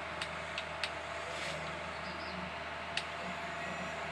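A steady faint hum with a few light clicks, from the plastic parts of a toy excavator as its arm and bucket are moved.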